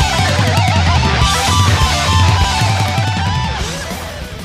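Two distorted electric guitars played through Laney amplifiers in a heavy metal style. One plays a high lead line with wide, wavering vibrato and a rising slide near the end, over a low, chugging rhythm part from the other.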